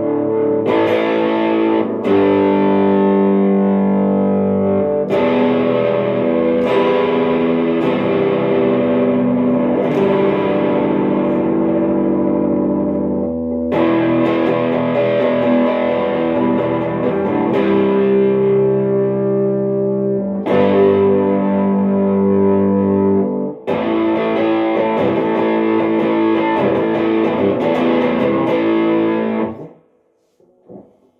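Electric guitar with a distorted tone, played with a pre-decimal British sixpence coin in place of a pick: chords struck and left ringing, changing every few seconds, stopping just before the end.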